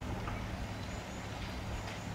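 Steady low engine hum over an even background hiss, with no change in pitch or level.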